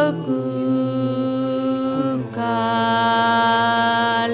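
Tibetan Buddhist prayer chanted in long, steady held notes, with a new note taken up just after the start and again about two seconds in.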